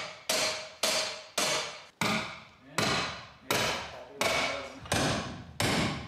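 Hammer blows on a steel rebar stake, driving it into the ground as a dome anchor. The strikes come steadily, about one and a half per second, each with a brief metallic ring.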